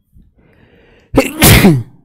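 A man sneezes loudly once, about a second in, after a faint drawn-in breath, the sneeze trailing off in a falling voice.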